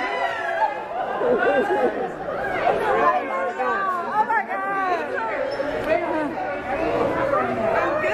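Several people talking at once: overlapping conversational chatter among a small group, with no single voice standing out.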